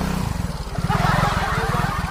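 Yamaha X-Ride scooter's single-cylinder engine running close by in a steady low pulse, growing louder and fuller about a second in.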